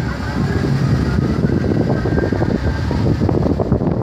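Wind buffeting a phone's microphone outdoors: a loud, irregular low rumble, with street noise under it.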